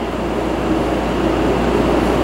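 Steady room background hum and hiss, with no distinct event.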